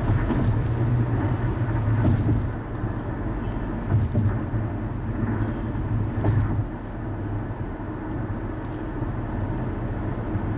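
Steady road noise of a car travelling at highway speed: a low tyre and engine drone, with a few brief louder bumps about four and six seconds in.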